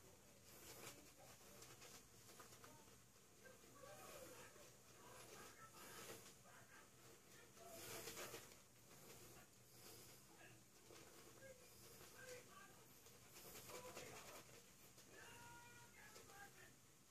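Near silence, with faint soft swishes of a synthetic E.L.F. kabuki makeup brush working shaving-soap lather over the face and neck, the strokes coming every second or two.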